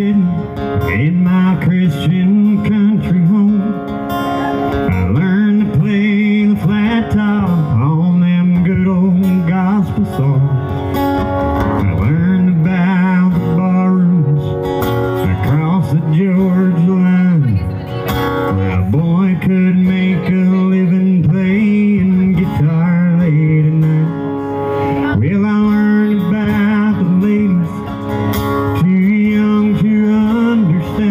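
Live acoustic guitars strummed and picked, with a man singing a slow song over them.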